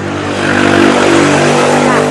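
A motor vehicle passing close by, its engine and tyre noise swelling loud over about a second, then cutting off suddenly near the end.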